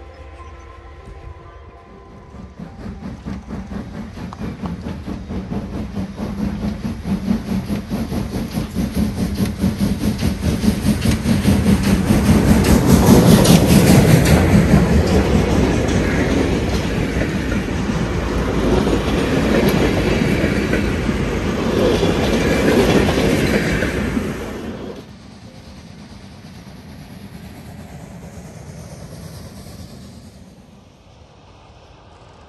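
A passenger train of coaches passing close by: a growing rumble with a rapid clickety-clack of wheels over the rail joints, loudest about halfway through. Near the end it cuts off suddenly to a much quieter, steady rumble.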